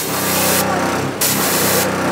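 Fire hose nozzle spraying a strong jet of water, a loud steady hissing rush whose brightest hiss drops away about half a second in and comes back a second in.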